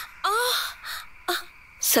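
A woman's breathy moan, rising in pitch, about a quarter second in, followed by shorter breathy sounds.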